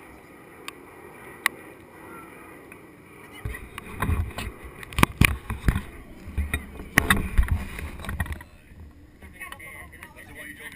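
Low rumbling noise on the microphone with a series of sharp knocks, starting about three and a half seconds in and dying away shortly before the end. A few faint clicks come before it.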